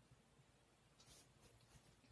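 Near silence: room tone, with one faint, brief rustle or scrape about a second in.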